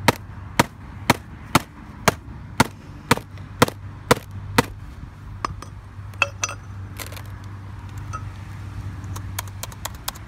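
Claw hammer striking the closed lid of a white polycarbonate MacBook, about ten sharp blows at two a second. After that come lighter, scattered clicks and taps.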